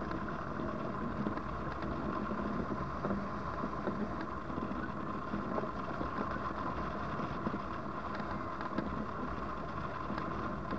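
Wind rushing past a camera mounted on a hang glider in flight, with a thin unbroken high tone running through it.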